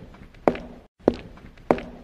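Footsteps walking at a steady pace: about three firm steps, a little over half a second apart, each with a short ringing tail. A brief moment of silence falls just before the second step.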